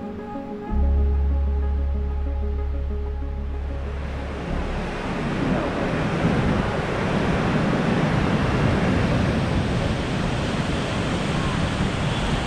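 Music ending in a deep bass note held for about four seconds, the loudest part, followed by a steady rush of wind buffeting the microphone.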